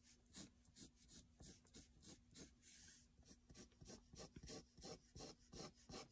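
Pencil sketching short curved strokes on paper, lifted between strokes, at about two or three quick scratches a second, with one longer stroke about halfway through.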